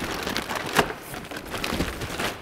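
Plastic-bagged motorcycle body plastics tipped out of a cardboard box: crinkling and rustling of the plastic bags and cardboard, with irregular clicks as the parts slide out, the sharpest about a second in.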